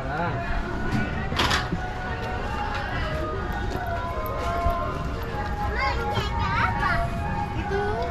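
Background crowd ambience: distant voices and children's voices over a steady low rumble, with faint music. A short hiss comes about a second and a half in.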